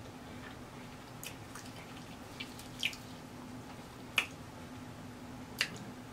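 Wet mouth clicks and smacks of chewing on a cheese-sauce-covered fried turkey leg: about six short, sharp ones spread a second or so apart, over a faint steady hum.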